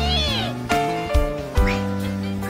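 A cartoon kitten's high-pitched voice crying out once at the start, its pitch arching up and down, over background music.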